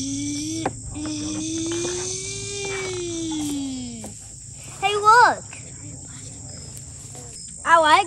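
Crickets chirping as a steady high trill throughout. Over them a voice holds one long drawn-out sound that rises and then falls in pitch for about four seconds, followed by a short high exclamation about five seconds in.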